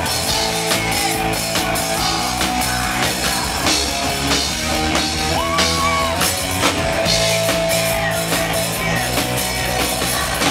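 Live rock band playing loudly, with drum kit, electric guitars and a singer's held vocal notes over them.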